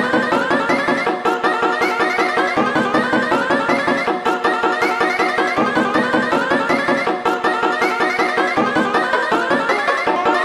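YTPMV remix music: short clips of cartoon audio, pitch-shifted and stacked into chords, repeated in a fast, even rhythm over a steady beat.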